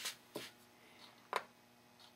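Three light, sharp clicks and knocks from a small metal model engine and fuel tank being handled and set down on a balsa fuselage, with quiet room tone between.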